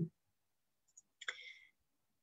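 A pause in a woman's speech: near silence, broken about a second in by a faint click and then a short, quiet mouth sound from the speaker.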